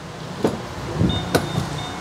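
Chevrolet Captiva's driver's door being opened: two sharp latch clicks about a second apart with a low thud between them. About a second in, a faint, thin high tone starts and keeps going; it is the car's door-open alert.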